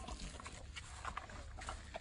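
A dog eating dry kibble from a bowl: faint, irregular crunching and clicking.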